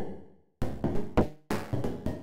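Synthesized percussive hits from a Max/MSP patch: noise impulses ring a bank of comb filters, giving short pitched knocks that die away quickly. About six hits come in an irregular rhythm. The first rings out alone for about half a second, and the hits crowd closer together near the end.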